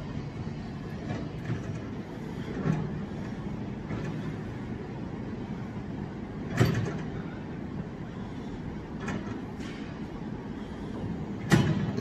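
Steady low background hum of a gym, broken by a few short knocks and clanks of gym equipment. The loudest comes a little past halfway, with fainter ones near the start and about three quarters in.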